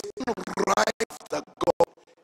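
A man preaching into a handheld microphone through a PA, in short, harsh, crackly phrases, with a few sharp clicks about a second in and near the end. A faint steady tone runs underneath.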